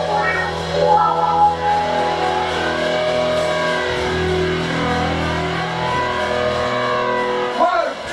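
Live rock band jamming in a rehearsal room: electric guitars holding and bending notes over bass guitar. The low end drops away about seven seconds in.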